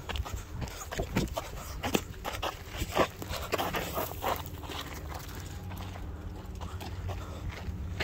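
Footsteps on a dirt trail with handling noise from a handheld phone, broken by a string of short sharp sounds through the first half.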